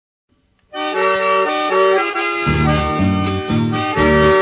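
Sertanejo instrumental music starting after a brief silence: an accordion plays a melody in held chords, and deep bass notes join about halfway through.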